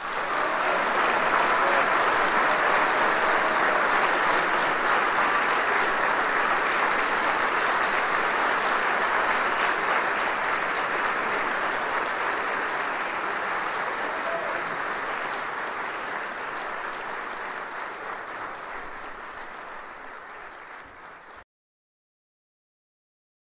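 Audience applauding, loudest at the start and slowly dying down, then cut off abruptly near the end.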